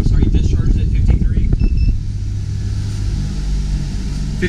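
Cold air blowing from a marine air-conditioning vent and buffeting the microphone, with a short electronic beep of an infrared thermometer about halfway through. From about two seconds in, the steady hum of the marine air-conditioning unit running takes over.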